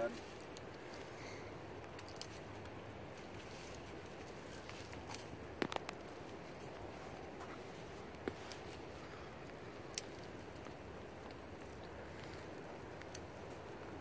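Quiet handling of a wire-mesh muskrat colony trap as a dead muskrat is worked out of it: a few scattered sharp clicks and taps of wire, the clearest about halfway through and again a few seconds later, over a faint steady background.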